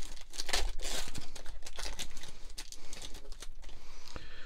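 Foil trading-card pack wrapper being torn open and crinkled by hand: a dense run of sharp crackles.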